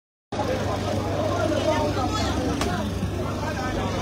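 Busy outdoor market ambience: people talking in the background over a steady low hum of road traffic, with a single sharp click about two and a half seconds in.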